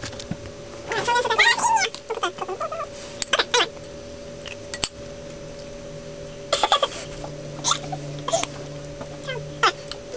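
Short wordless vocal sounds from a person about a second in. After them come scattered sharp clicks, and a faint steady hum runs underneath throughout.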